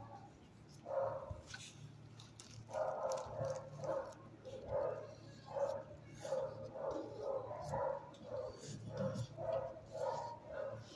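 A dog in a shelter kennel barking repeatedly, short barks coming in quick succession from about a second in, over a steady low hum.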